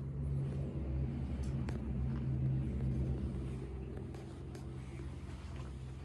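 A steady low mechanical rumble, like a motor running, with a few faint sharp clicks.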